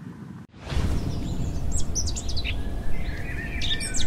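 Birds chirping and calling over a steady low rumble of outdoor ambience, which starts abruptly about half a second in.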